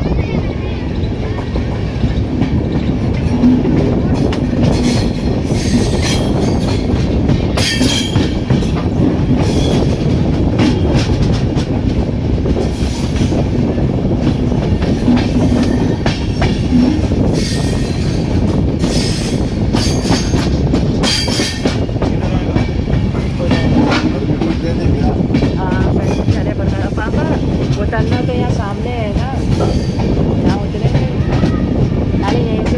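Express passenger train (14151 Kanpur–Anand Vihar Express) running into the station, its coaches rumbling steadily with the clickety-clack of wheels over rail joints and occasional wheel squeal.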